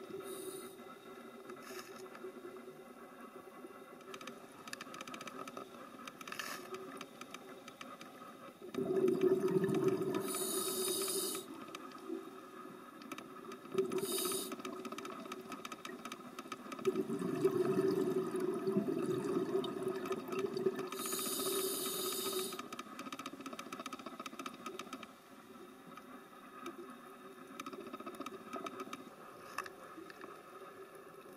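Scuba diver breathing through a regulator underwater: short hissing inhalations and two longer bubbling exhalations, about a third and two-thirds of the way through. A faint steady crackle runs underneath.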